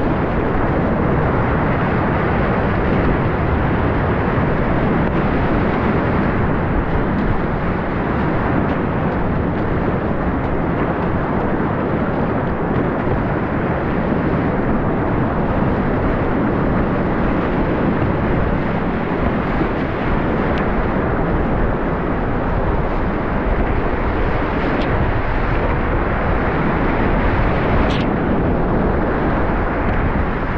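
Continuous roar of whitewater rapids heard from a kayak running them, with waves breaking over the bow and against the boat-mounted camera. A single sharp click sounds about two seconds before the end.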